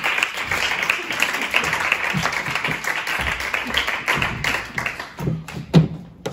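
Audience applause, a dense patter of many hands clapping that dies away about five seconds in. A single sharp thump comes just before the end.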